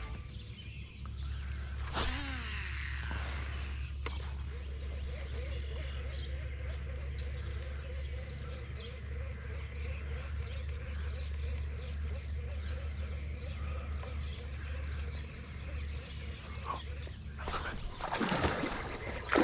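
Outdoor pond ambience with birds chirping over a low steady rumble, and a light repeated clicking from a fishing reel being cranked during a lure retrieve.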